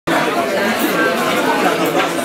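Restaurant chatter: several diners' voices overlapping in a steady babble, with no single clear speaker.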